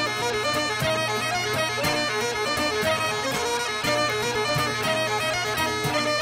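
Bagpipe music: a steady low drone under a changing melody with quick ornamental grace notes, starting abruptly.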